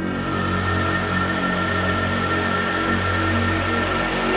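Cinematic intro sound design: a sustained, steady swell of noise over a low drone, with a few held high tones.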